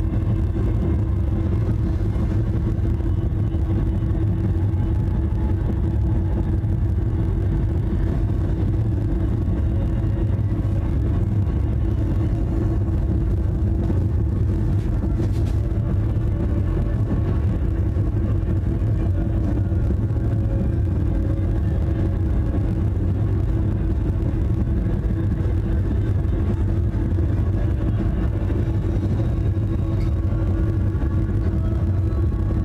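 A steady low rumble with a faint held hum above it, unchanging in level.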